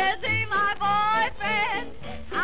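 1920s jazz quintet recording in an instrumental passage: a lead instrument plays a melody of short, bending notes over a bass beat of about two notes a second.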